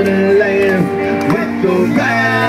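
Live rock band playing loudly, with guitars holding sustained notes.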